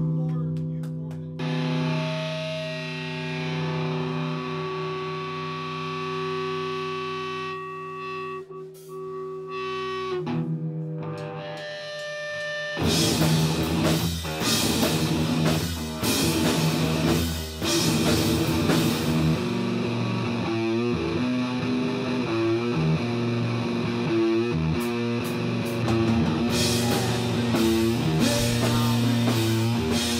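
Live rock band: a distorted, effects-laden electric guitar rings out sustained chords for about the first twelve seconds. Then the drums and the rest of the band come in hard and keep playing together to the end.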